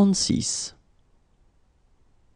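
A voice saying the French number "quarante-six", ending within the first second, then near silence.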